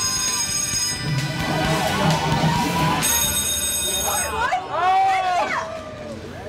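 Electronic ringing of a carnival water-gun fire-truck race game, sounding for the first second and again for about a second near the middle, over game music and midway chatter. Then comes a loud, excited shout from a player celebrating the win.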